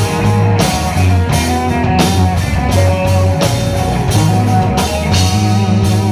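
A live rock band plays an instrumental stretch. A lead guitar line with bent, wavering notes runs over bass guitar and drums, and the cymbals are struck on a steady beat.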